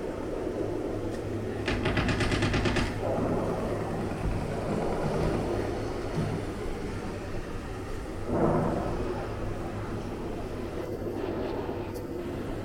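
Recorded machine-gun fire played over gallery loudspeakers: a rapid rattle of about ten shots a second lasting about a second, over a steady low rumble. A louder burst comes about eight seconds in.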